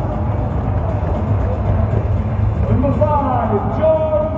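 Stadium PA announcer's voice, echoing, over a steady low crowd rumble. A long called-out name about three seconds in.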